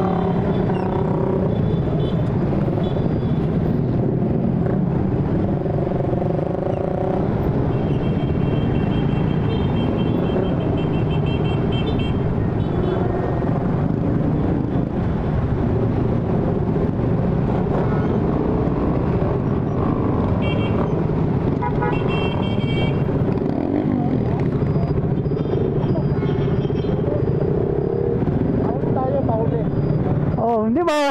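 Motorcycle engines running steadily at low speed as a group of riders moves off together, with voices in the background.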